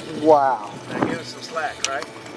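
Excited wordless vocal exclamations, a rising-and-falling 'ooh'-like cry about half a second in and a shorter one near the end, with two sharp knocks in between.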